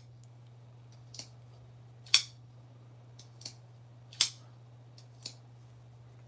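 Folding pocket knife being handled, its blade and lock giving five short, sharp metallic clicks spread over a few seconds, the loudest about two seconds in.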